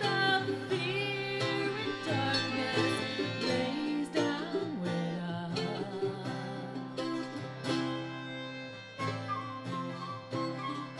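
Live acoustic country-folk band playing an instrumental passage: strummed acoustic guitars and accordion under a wavering melody line.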